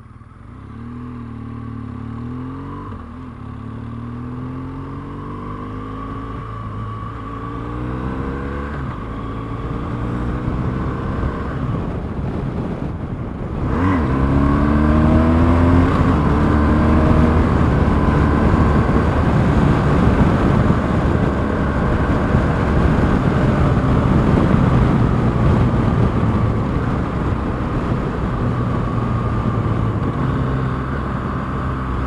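BMW R1200GS flat-twin motorcycle engine accelerating up through the gears, its pitch rising in several climbs that each drop back at a shift. From about halfway in it runs louder and steadier at road speed under a rush of wind noise.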